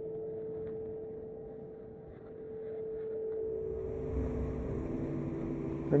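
Soft background music of sustained held tones, with a low rumble and faint hiss swelling in over the second half.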